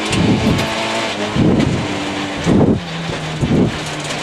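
Citroën C2 rally car's engine running hard on a gravel stage, heard from inside the cabin, its pitch dropping about two and a half seconds in. Several heavy rumbling surges of noise from gravel and bumps against the body are mixed in.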